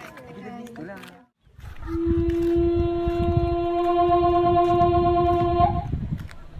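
Horror film sound effect: one long steady tone held for about four seconds over a deep rumble, cutting off just before a scene change. It is preceded by a second of dialogue and a short silence.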